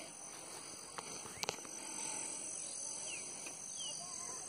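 Faint outdoor rural background with a few short, faint bird chirps over a steady hiss, and a couple of brief clicks about one and one and a half seconds in.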